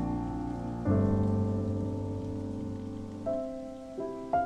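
Solo piano playing a slow waltz over a steady background of falling rain. A low chord struck about a second in rings and fades, and a softer, higher chord comes in near the end.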